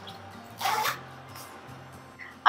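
A short zip from a zippered fabric pouch being pulled shut, heard once about half a second in, over faint background music.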